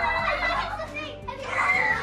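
A group of young children shrieking and cheering excitedly together, their voices overlapping, with a high held shriek near the end.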